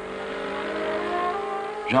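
Renault 5 Turbo's turbocharged engine accelerating hard, its note rising steadily in pitch.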